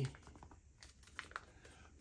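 Faint crackle and small clicks of a folded paper slip being unfolded by hand.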